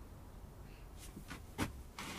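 Quiet room tone with a faint low hum and a few faint clicks, then one short spoken word near the end.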